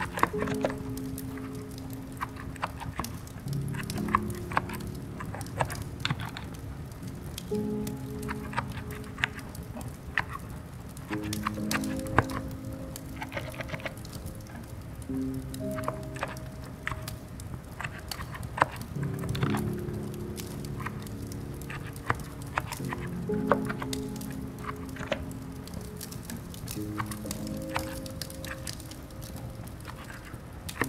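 Slow, soft background music of held low notes that change every second or two, laid over scattered light clicks and crackles from a writer's-room ambience of quiet keyboard typing and a fireplace.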